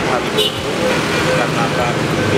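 Steady roadside traffic noise of passing cars and motorbikes, with indistinct voices in the background and a brief high-pitched sound about half a second in.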